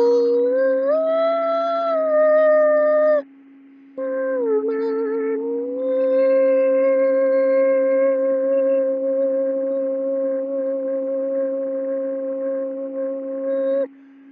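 A man singing long, wordless, high howl-like notes over a steady low drone tone. The first note climbs in steps and breaks off about three seconds in. After a short pause a second note dips, then is held steady for about ten seconds and stops just before the end.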